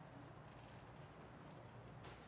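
Near silence: faint room tone with a steady low hum and a few faint clicks about half a second in.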